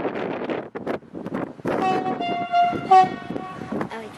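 An SNCF B 81500-series bi-mode AGC train sounds its horn once as it approaches, for about a second and a half in the middle, over a steady rushing noise.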